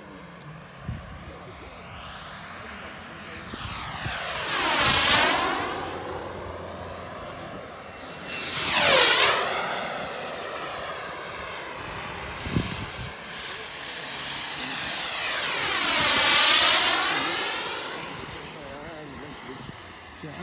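Ultraflash model jet making three fast low passes. Each pass is a rush of jet noise that swells and fades as the model goes by; the third is the longest, with a high whine that drops in pitch as it passes.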